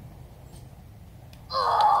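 A high-pitched child's yell, about half a second long, near the end, over a faint steady outdoor background.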